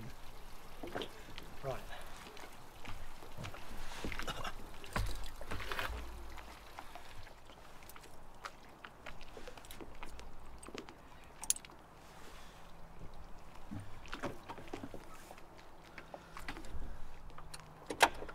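Scattered small knocks, clicks and rustles from a man shifting about in an inflatable dinghy and handling its davit lines, with a brief low rumble about five seconds in.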